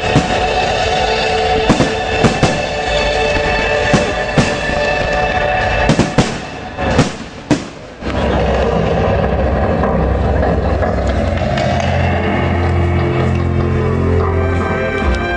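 Aerial firework shells bursting with sharp bangs, a dozen or so in the first eight seconds, over music that plays throughout. The bangs stop about eight seconds in, and the music carries on with a heavy bass.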